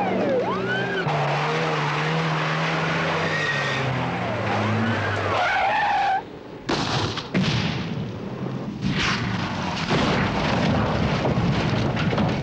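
A VAZ-2101 militia car in a chase: its siren wails briefly at the start, then its engine runs and revs with tyres squealing. After a short drop about six seconds in, loud rough scraping and rumbling noise with repeated crashes fills the rest.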